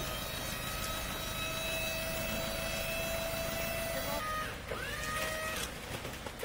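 Hydraulic tipping gear of a small tipper truck whining steadily as it raises the loaded bed. After about four seconds the steady whine gives way to a few short glides that rise in pitch and then level off.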